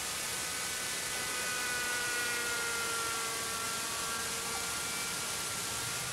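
Engine of a vintage GMP King Cobra RC helicopter whining in flight: a thin steady tone that sags slightly in pitch about two seconds in, under heavy steady hiss.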